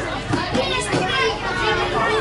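Several young footballers shouting and calling to one another on the pitch, their high voices overlapping.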